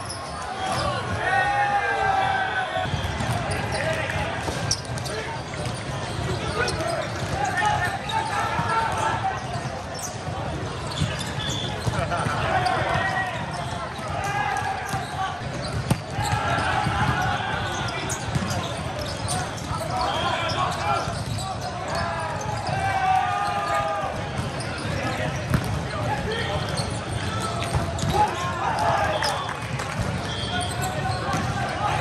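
Volleyball rally sounds: players shouting calls over sharp slaps of the ball being hit and balls bouncing on the hard court, with a few loud single hits standing out. Crowd and play from other courts run underneath, all echoing in a large hall.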